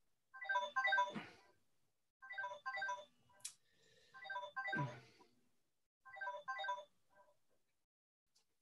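Mobile phone ringtone playing a short melodic phrase of clipped notes, repeated four times about two seconds apart.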